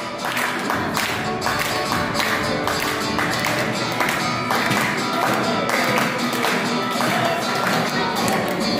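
Two acoustic guitars strumming a rhythmic tune, with hand claps keeping a steady beat.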